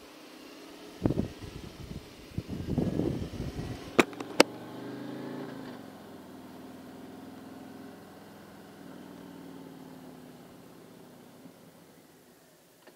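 Harley-Davidson Street Glide's V-twin engine pulling away from a stop. It is loudest in surges over the first few seconds. Two sharp clicks half a second apart come about four seconds in, and then the engine runs on more steadily and quietly.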